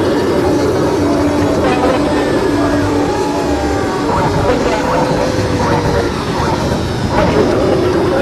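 A voice holding and gliding through long notes over a loud, dense backing, as in a song.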